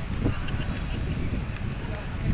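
Outdoor street sound: indistinct voices over a steady low rumble, with a single short knock about a quarter second in.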